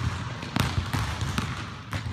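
Basketballs bouncing on a gym floor: a few separate thuds, unevenly spaced, with the hall's echo behind them.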